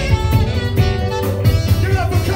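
Live band playing: an electric guitar and a saxophone holding melody notes over a steady drum beat.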